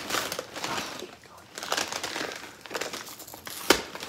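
Packing paper and cardboard rustling and crinkling as hands dig into an opened shipping box, with one sharp click near the end.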